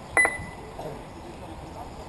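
Lap-timing system giving one short electronic beep about a fraction of a second in, the signal of an RC car's transponder crossing the timing line, over faint background voices.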